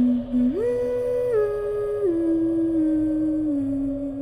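A voice humming a slow tune in long held notes. The tune leaps up about half a second in, then steps down note by note.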